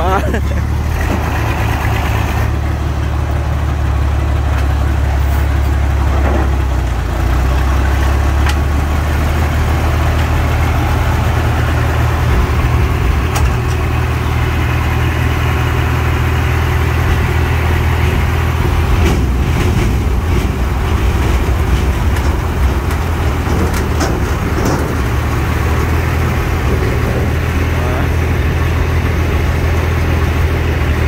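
Heavy diesel lorry engines running steadily at a low, even drone while the fruit bins are raised to tip their loads.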